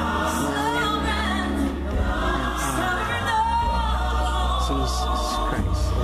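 Gospel music: several voices singing a slow, wavering melody over a steady low bass.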